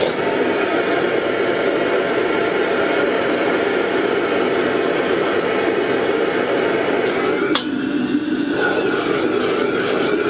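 Commercial gas wok burner running at full flame with a steady roar under a wok of stir-frying vegetables and noodles, food sizzling and the ladle scraping in the pan. One sharp clank of metal on the wok about seven and a half seconds in.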